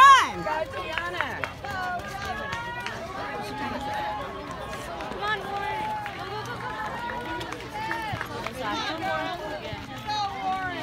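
Spectators' voices shouting and cheering over one another trackside, with one loud, high-pitched yell at the start.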